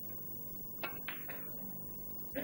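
Snooker cue tip striking the cue ball, then the cue ball clicking into a red: two sharp clicks about a quarter second apart, just under a second in.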